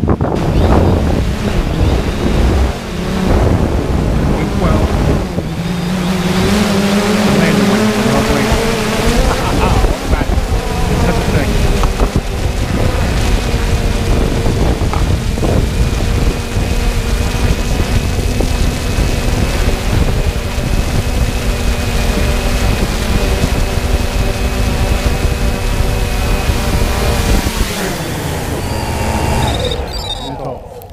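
3DR Solo quadcopter's electric motors and propellers heard close up from its onboard camera as it descends and lands under automatic control: a loud, steady multi-tone whine over rushing wind noise. About 28 seconds in, the pitch falls and the sound drops away as the motors slow after touchdown.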